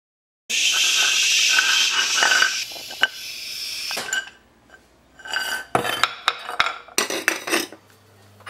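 Kitchenware being handled: a small metal pot moved about on an electric stove burner and at the sink, first a couple of seconds of loud rushing, scraping noise, then scattered clinks and knocks of metal and dishes near the end.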